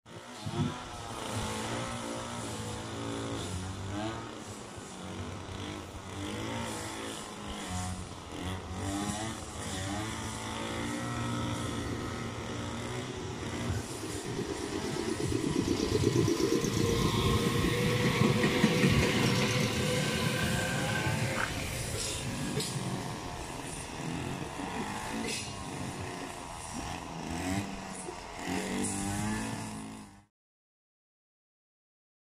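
Meitetsu 3500 series electric train pulling slowly away and passing close by. Its inverter traction motors whine in pitch steps that rise as it gathers speed, and wheel-on-rail noise builds to its loudest as the cars go past, about two-thirds of the way through.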